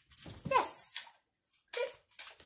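A dog jumping over a person's outstretched arm and landing on a wooden floor, its movement heard as a brief rush of high scratchy noise. A short falling vocal sound comes with it in the first second, and another brief sound near the end.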